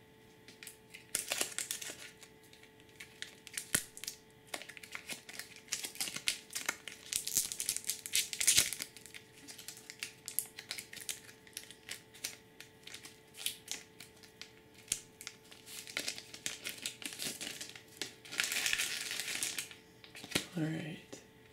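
Foil booster-pack wrapper crinkling in the hands, with many small clicks and snaps of trading cards being handled. The crinkling comes and goes, busiest in the middle and again in a longer stretch near the end.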